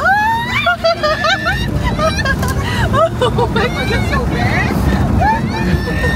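Excited voices calling out and laughing inside an SUV's cabin, over the steady low rumble of the vehicle driving on a rough dirt road.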